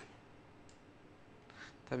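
Two faint computer mouse clicks, the second about three-quarters of a second after the first, over quiet room tone.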